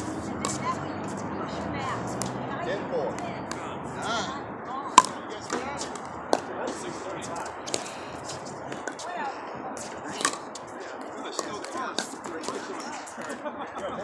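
Pickleball rally: sharp pops of paddles hitting the hard plastic ball, a dozen or so spread irregularly through the stretch, the loudest about five seconds in, over a murmur of background voices.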